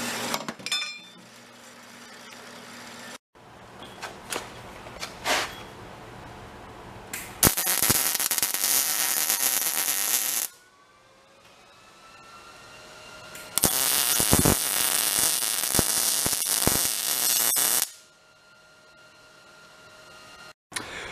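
MIG welder tack-welding steel square tubing: two runs of steady crackling sizzle, one of about three seconds starting about seven seconds in and one of about four seconds starting near the middle. In the first three seconds a horizontal bandsaw hums steadily, then stops abruptly.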